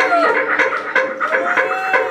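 Electronic dance music from a DJ set, played loud over a club sound system: a steady beat and a held low tone, with a high, voice-like sound that swells up and falls away twice.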